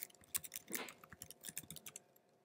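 Quick run of keystrokes on a laptop keyboard as a web address is typed into a browser's address bar.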